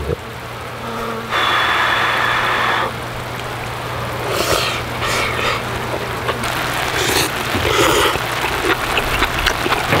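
A person eating, with short chewing and slurping sounds, over a pot of seafood stew simmering and bubbling on a portable gas stove with a steady low burner hum.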